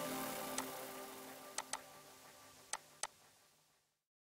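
Background music fading out, with five faint sharp clicks spread through the middle of the fade, two of them in quick pairs; the sound cuts to dead silence about three seconds in.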